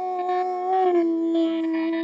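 A woman's voice holding a long final note of a Carnatic devotional song in raga Saranga. The pitch steps slightly lower about a second in.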